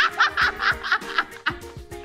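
A woman laughing in a quick run of bursts that tails off after about a second, over soft background music.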